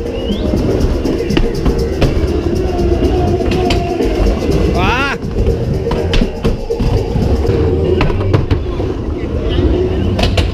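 Skateboard rolling on a mini ramp, its wheels rumbling, with several sharp clacks as the board and trucks hit the coping and rail. Crowd voices and background music run underneath.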